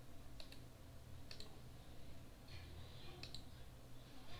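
A few faint, sharp clicks from a computer mouse and keyboard, four or so spread out over the seconds, over a low steady hum.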